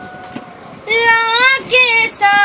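A girl singing a Saraiki folk song in a high, strong voice, coming in loudly about a second in and holding long, wavering notes with a short break just before the end.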